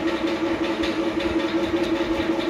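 A machine running steadily: an even hum carrying one constant mid-pitched tone.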